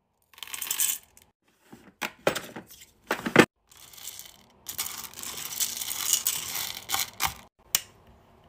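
Hard wax beads poured into the metal pot of a wax warmer, rattling and clinking against the metal and each other in several short bursts, then in a longer continuous run from about five to seven seconds in. A sharp click comes near the end.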